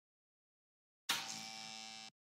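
Silence, then about a second in a steady electronic buzz with a hiss starts and holds level: an editing sound effect over a countdown graphic.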